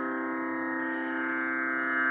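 Steady tanpura-style drone: a stack of held tones with a sitar-like jangle, sounding the reference pitch (sruti) for Carnatic singing.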